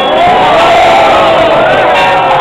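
A large crowd shouting and cheering together, many voices at once, starting suddenly and staying loud.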